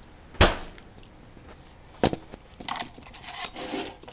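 A loud thump about half a second in and a sharp knock about two seconds in, then a stretch of rustling and crinkling as a plastic-wrapped popsicle is handled before being opened.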